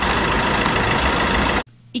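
Loud, steady vehicle engine running close to the microphone, cutting off abruptly about one and a half seconds in.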